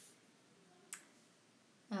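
Two faint taps of a stylus on a tablet screen, a soft one at the start and a sharper one about a second in, with a voice starting near the end.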